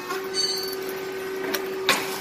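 Grain-cake popping machine running with a steady hum, with two sharp clicks from its mechanism near the end, the second the louder.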